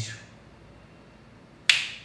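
A pause of quiet room tone, then a single sharp finger snap near the end.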